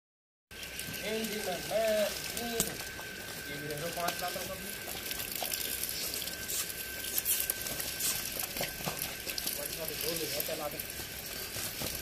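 Men's voices calling out a few times, indistinct, over a steady crackling hiss and a faint steady high whine.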